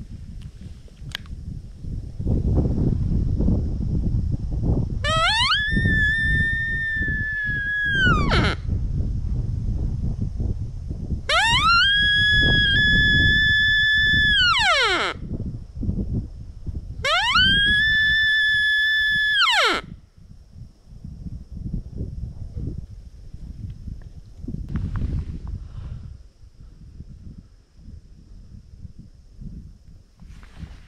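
Sika stag call (bugle) blown three times, each a long whistle that rises, holds a steady high note for two to three seconds and then drops away, imitating a rutting sika stag's peel to bring one in. A low rumble runs underneath until the third call ends.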